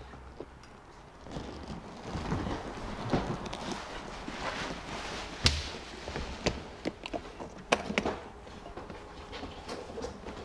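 Hardshell guitar case being lifted out of its cardboard shipping box, carried and laid on a desk, with footsteps and rustling handling noise. In the second half come a run of sharp clicks and knocks as the case is set down and its metal latches are handled.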